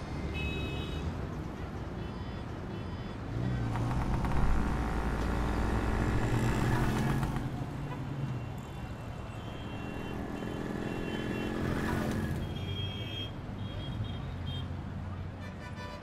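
Street traffic ambience: motor scooters and cars passing on a road. Their engine rumble swells about four seconds in and again around twelve seconds.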